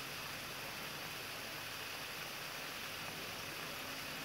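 Steady background hiss with a faint, even low hum underneath; no distinct event.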